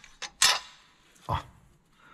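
A single sharp metallic clack about half a second in, as a steel injector-setting bar is set down against the cylinder head of a VW pump-injector TDI engine.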